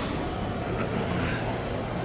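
Steady background noise of a busy indoor shopping-mall concourse: a low, even rumble with faint, indistinct voices in the distance.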